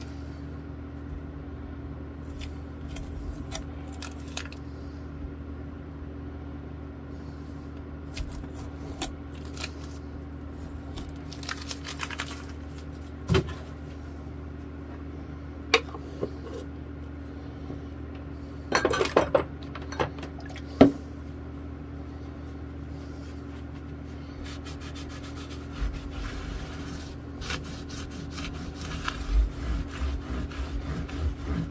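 Small handling sounds on a workbench over a steady low hum: masking tape being peeled off a bass guitar's frets, scattered clinks and knocks of small items being set down, the sharpest about twenty seconds in, and a cloth rubbing over the fretboard near the end.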